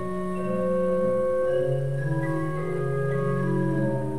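Organ playing slow, sustained chords, with the held notes shifting to new pitches every second or so.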